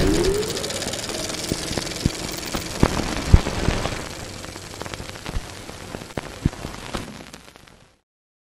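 Designed sound effects of an animated logo intro: a crackling, hissing swell with a short rising tone at the start and scattered sharp knocks, the loudest about three seconds in, fading out just before the end.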